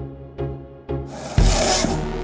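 Backing music with a steady beat of about two a second. About a second in, a loud rasping scrape from longboard urethane wheels sliding sideways across asphalt comes in and keeps going.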